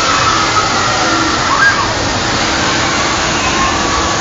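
Wind rushing over a phone's microphone on a moving amusement ride, a steady loud rush, with faint voices and a low hum that comes and goes underneath.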